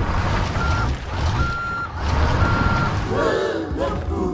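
Cartoon sound effect of a heavy vehicle reversing: a low engine rumble with three short, high reversing beeps about a second apart. Near the end a few excited cartoon voices come in.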